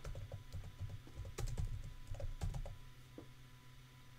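Typing on a computer keyboard: a dozen or so irregular keystrokes and clicks, thinning out near the end.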